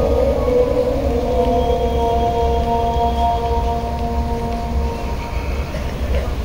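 Muezzin's voice chanting the Fajr adhan over the mosque loudspeakers, holding one long, steady note that fades out near the end.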